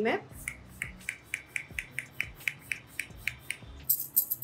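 Pump-action setting spray bottle being spritzed rapidly toward the face, a quick run of about fourteen short misting hisses, four to five a second, stopping shortly before the end.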